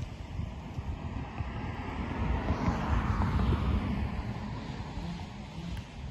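A vehicle passing outdoors, its noise swelling to a peak about halfway through and then fading, over wind buffeting the microphone.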